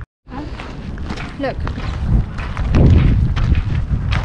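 Wind buffeting the camera's microphone: a rough, low rumble that grows loud from about halfway in, after a brief dropout at the very start.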